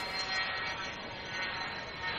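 Steady jet-aircraft noise: a rushing hiss with a thin high whine held over it.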